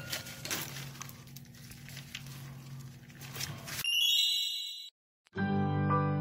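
Faint small clicks and rustles over a low steady hum. About four seconds in, a bright chime sound effect rings for about a second and cuts off into silence. Then plucked acoustic-guitar music starts.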